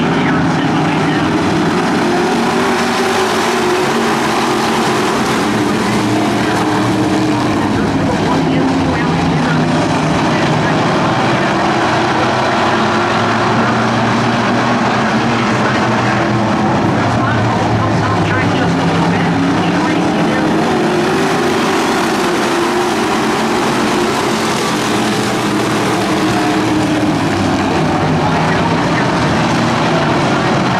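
A pack of street stock race cars racing on a dirt oval, their V8 engines loud and continuous, the engine pitch rising and falling as the cars lap the track.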